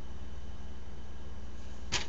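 Steady low electrical hum and hiss from the webcam's microphone and room, with a brief rustle near the end as a pillow is picked up.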